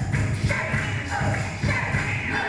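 Dance music with a heavy, steady beat played over loudspeakers.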